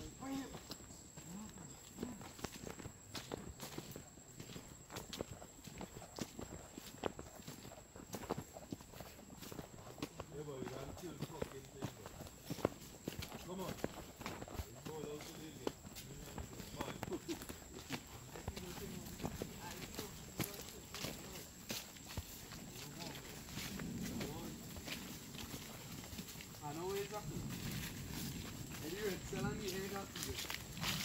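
Footsteps of several people in rubber boots walking a muddy, leaf-covered trail, an uneven run of soft scuffs and squelches, with faint voices talking now and then in the middle and toward the end.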